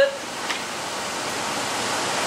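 Steady hiss of background room noise, with a single click about half a second in as the cap of a Perlini carbonating cocktail shaker is closed.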